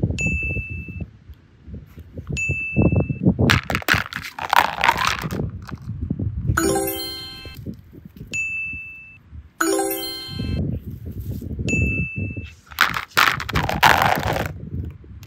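Dubbed-in sound effects: a bright, steady ding sounds four times, two short chiming jingles of several stacked notes come between them, and two longer noisy rushes sweep through, over low rumbling handling noise.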